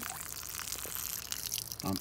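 Water pouring and splashing steadily, as more water is tipped into a plastic cup while its siphon tube keeps draining a stream onto wet ground.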